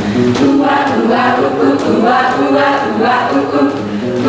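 A group of women singing a song together, many voices at once.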